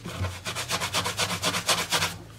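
Cloth rag rubbed quickly back and forth over the lacquered sunburst top of a Gibson SJ-200 acoustic guitar, a fast even run of rubbing strokes that starts a moment in. The rubbing works at blistered, damaged finish to smear and blend it.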